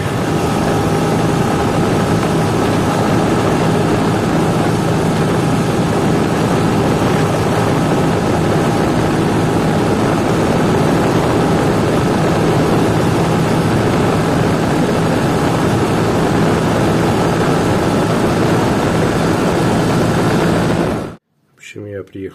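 Motorcycle riding at steady road speed: a loud, even rush of wind over the microphone with the engine's steady drone underneath. It cuts off suddenly about a second before the end.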